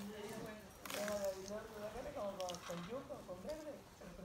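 People talking indistinctly, their words not made out.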